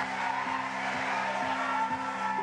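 Intro background music: low sustained synth tones with a soft pulse about twice a second, over a hazy pad.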